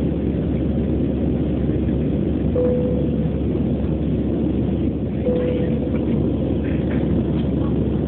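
Steady roar of an Airbus A320-family airliner's jet engines and airflow, heard inside the cabin during the climb after take-off. Two short faint tones sound a few seconds apart.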